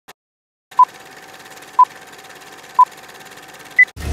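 Electronic countdown beeps: three short beeps a second apart, then a fourth, higher beep, over a faint hiss.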